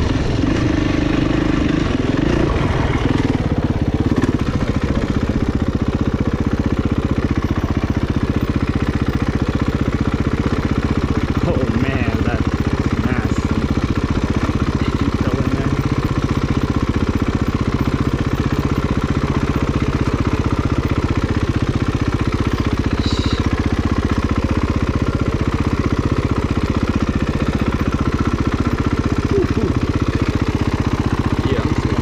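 Kawasaki KX450F's single-cylinder four-stroke engine running while the bike is ridden, heard close up from on board. It runs fairly steadily, with a brief rise in pitch in the first couple of seconds and small shifts with the throttle after that.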